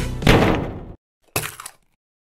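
Logo sting: music ending on a heavy hit that rings out and cuts off about a second in, then one more short thud-like sound effect.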